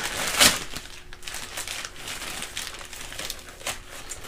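Gift wrapping paper and tissue paper crinkling and rustling as a present is unwrapped by hand, loudest in a sharp rustle about half a second in, then softer irregular crinkles.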